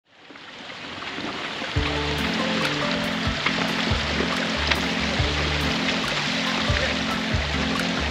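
Splashing of small fountain jets in a shallow pool, fading in at the start. A steady bass beat of background music enters about two seconds in.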